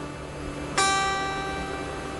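Acoustic guitar, the high E string fretted by the pinky at the third fret in a D suspended 4 shape, plucked once under a second in and left ringing.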